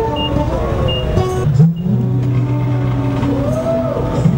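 Tow truck engine and hydraulic wheel-lift running as the lift raises a car's wheel. The pitch rises a little under halfway through, then holds steady. Background music plays throughout.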